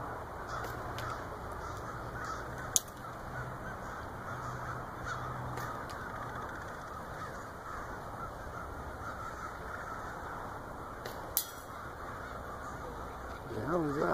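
A flock of crows cawing, many calls overlapping over a steady background noise. Two sharp clicks come about three seconds in and again about eleven seconds in.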